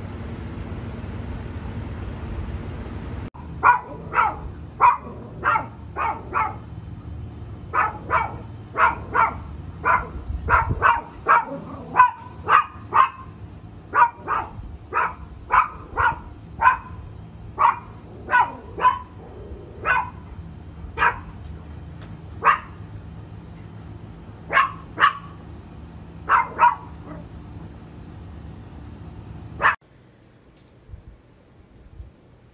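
A dog barking over and over, single short barks about once a second, some in quick pairs. For the first three seconds or so there is only wind rumble on the microphone.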